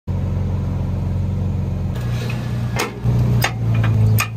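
An SUV's engine idling steadily, its note changing about halfway through. Near the end come a few sharp metallic clicks as a trailer safety chain is clipped onto the tow hitch.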